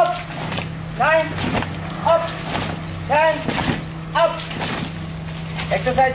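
Short shouted counts, about one a second with five in a row and a sixth near the end, the rhythmic calling of a group calisthenics drill. A steady low hum runs beneath them.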